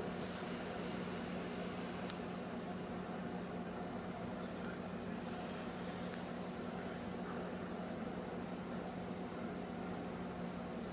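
Two long breathy hisses, the first at the start lasting about two and a half seconds and the second about five seconds in: vapor being blown out after hits on a freshly wicked sub-ohm dual-coil dripper, over a steady low hum.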